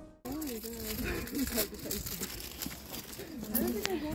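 Background music cuts off just after the start. Then indistinct voices of people talking follow, with a few faint clicks.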